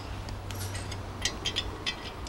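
Several light clicks and taps as a spark plug and an aluminium Knucklehead cylinder head are handled on the bench, over a steady low hum.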